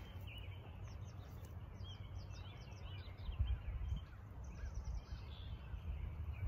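Small birds chirping in many short, quick calls over a low steady rumble.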